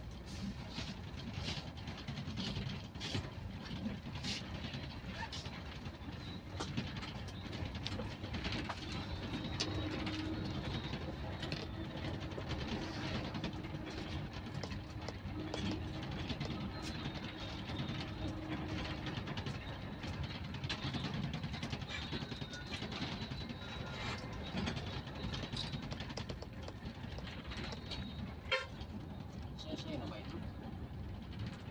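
Steady engine and road noise of a moving vehicle on a concrete road, with frequent light rattles and clicks and one sharp knock near the end.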